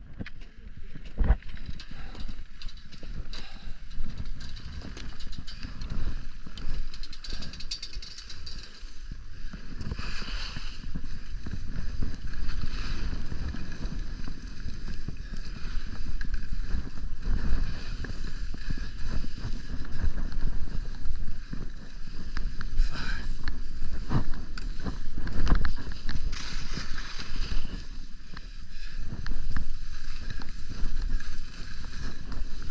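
Skis sliding and scraping over packed snow on a downhill run, with wind rumbling on the microphone.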